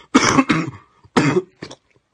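A man coughing several times in two quick bouts about a second apart, with a smaller cough after; the coughing of a man who says he is infected with coronavirus.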